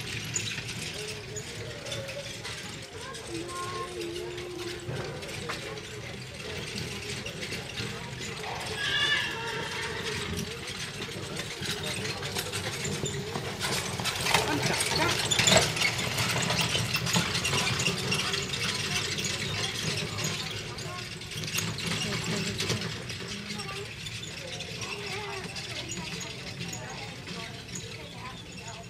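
Outdoor show-ground ambience with a murmur of distant voices; around the middle a horse-drawn carriage passes close and the sound swells for a few seconds.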